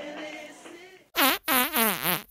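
A quick string of about five short, pitched fart noises, starting about a second in.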